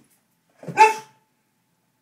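A boxer dog barks once: a single short, loud bark.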